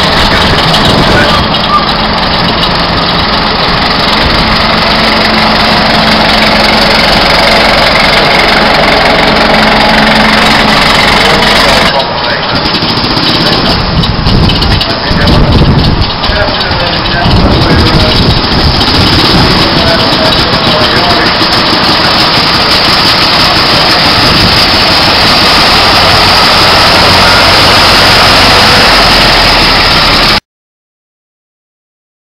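Engine of a First World War army lorry running as the lorry drives slowly, with people's voices around it.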